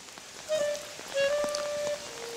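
Steady rain hiss, joined about half a second in by background music: a slow melody of long held instrumental notes that becomes the loudest sound.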